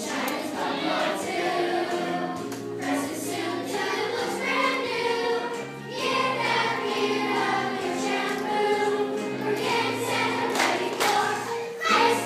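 A group of children singing a song together with instrumental accompaniment that carries a steady bass line.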